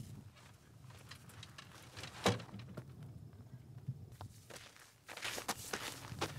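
Footsteps in boots on dry dirt, scattered light crunches with a single sharper knock a little over two seconds in and quicker steps near the end.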